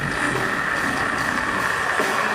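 Live deathcore band playing at full volume: drums and low-tuned distorted guitars form a dense, steady low rumble under one steady high held tone.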